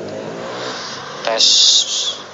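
Phone-speaker playback of a test recording made with a homemade external microphone on an Akaso Brave 4 action camera: a voice counting and saying "tes", with a steady low hum underneath and a loud burst of hiss about a second and a half in.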